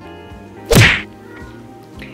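A single loud whack-like transition sound effect at a jump cut, about three-quarters of a second in, fading within a third of a second. Light background music runs underneath.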